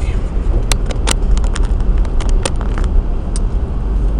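Steady low rumble of a moving car's road and engine noise heard from inside the cabin, with a scatter of short, sharp clicks near the middle.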